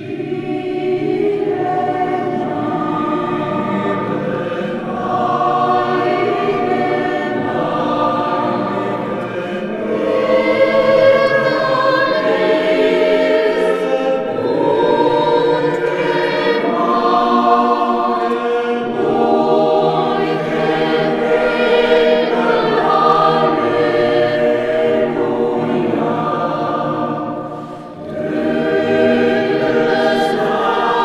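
Mixed choir of men's and women's voices singing in long held notes, with a brief break for breath about two seconds before the end.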